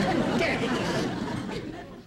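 Indistinct voices, dying away near the end.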